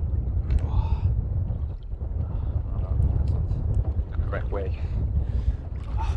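Steady low rumble of wind buffeting the microphone over open water. A voice murmurs briefly twice, about a second in and past the middle.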